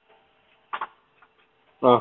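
A pause on a telephone line: faint steady line hum and one short click a little under a second in, then a man's 'uh' just before the end. The sound is narrow and thin, cut off like phone audio.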